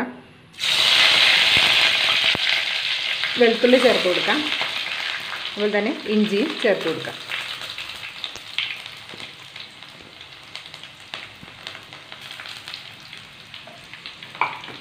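Hot oil sizzling in a black clay pot (manchatti) as chopped green chillies and aromatics are dropped in. It starts suddenly about half a second in, loud and crackling, then slowly dies down, with a wooden spatula stirring.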